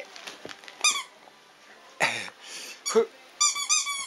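Squeaky toy ball being squeezed in a German Shepherd's mouth: short high-pitched squeaks, one about a second in and a quick run of about four near the end, with a brief noisy burst in between.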